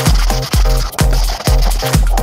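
Background electronic dance music with a steady kick-drum beat, about two beats a second.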